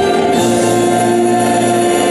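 A youth choir of teenage boys and girls singing Christmas music together, holding long notes, with the chord changing about half a second in.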